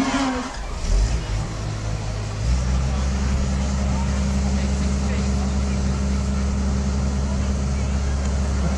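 An engine running steadily as a low, even drone, stepping up in level about two and a half seconds in and holding there.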